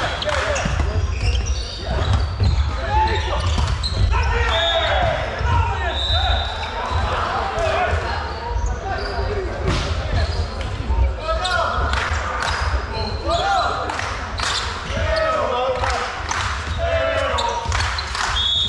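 Volleyball being played in a sports hall: players' voices calling out, sharp knocks of the ball being hit and bouncing, and short shoe squeaks on the wooden court, all echoing in the hall.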